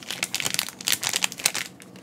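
Plastic wrappers of two sealed Panini Mosaic basketball trading-card packs crinkling in a run of small irregular crackles as they are handled and turned over in the hands.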